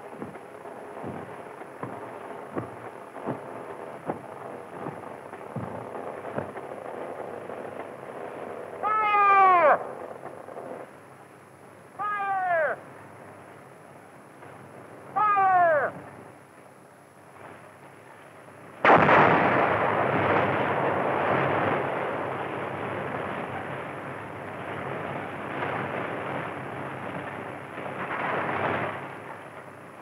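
Three short warning whistle blasts, each falling in pitch, about three seconds apart. Then a dynamite blast loosening iron ore goes off suddenly and rumbles on, fading slowly over about ten seconds.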